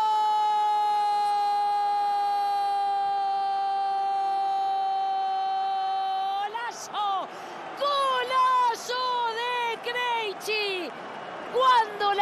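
A Spanish-language football commentator's drawn-out goal call: one long shouted note held for about six and a half seconds, sinking slightly in pitch. It is followed by a run of short, excited shouted calls.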